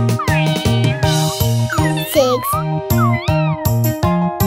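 Cartoon kitten meows, about four short rising-and-falling calls, over bouncy children's song music with a steady beat.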